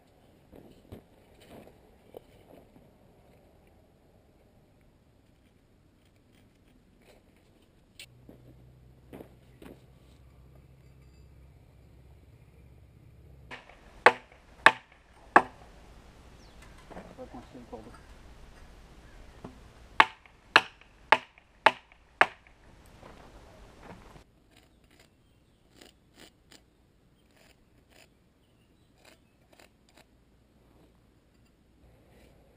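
Sharp hammer blows on metal while a rigid fence post is being fitted: three quick strikes, then a few seconds later five more at about two a second, the loudest sounds here. Faint light ticks and handling knocks come before and after.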